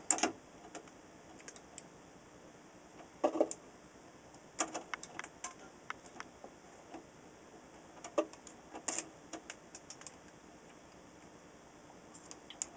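Scattered small clicks and taps of hand tools working among the wires and metal chassis of an old tube radio, with a few louder knocks spaced through it.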